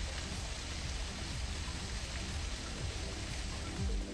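A thin waterfall pours off a cliff ledge onto the rocks below, making a steady, even rush of falling water.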